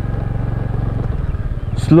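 Honda scooter's small single-cylinder engine running at low, steady riding speed: a steady low hum made of rapid, even firing pulses.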